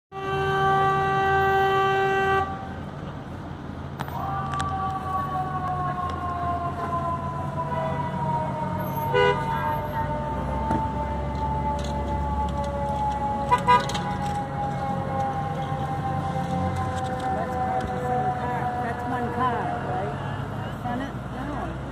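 A vehicle horn held in one long blast of about two and a half seconds at the start, the loudest sound, over low traffic rumble. Then a wailing tone with a second note above it slowly slides down in pitch for the rest of the time, like a siren winding down, broken by two short chirps.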